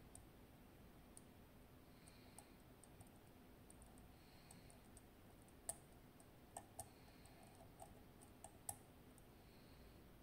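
Faint small clicks of the wafers in a partially gutted Miwa DS wafer lock as fingertips press and release them, a handful of sharp clicks mostly in the second half.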